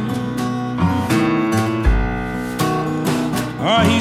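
Electric blues band playing a short instrumental stretch with the guitar to the fore over a steady beat; the singing voice comes back in near the end.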